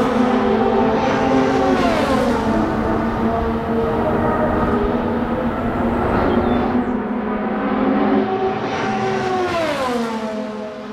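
Indy car engines at speed on the track. A car goes by about two seconds in with a sharp fall in pitch, the engine drone carries on, and another car passes with the same drop near the end.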